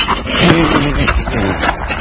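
A person's strained, wordless vocal sound about half a second in, over loud rough rustling and scuffling noise close to the phone's microphone.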